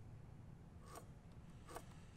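Two faint, short scrapes, one about a second in and one near the end, as a line is squared across timber with a biro against a combination square.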